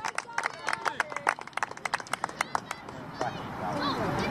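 Rapid, irregular knocks and clicks of the camera being jostled as its holder moves along the touchline, several a second, giving way to voices about three seconds in.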